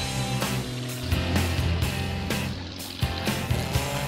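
Background music with a steady beat: sustained bass notes under regular percussive hits.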